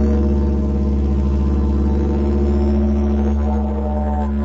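Music: a didgeridoo's low, steady drone with a fast rhythmic pulsing over it.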